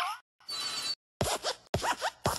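Sound effects for the animated Pixar desk lamp hopping: a squeak sliding in pitch, a short hiss, then four quick hits a second or so in, each falling in pitch.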